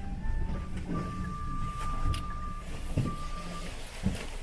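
Aerial ropeway cabin running into its station: a steady low rumble with a few sharp knocks. A steady high tone starts about a second in and holds for roughly two seconds, broken once briefly.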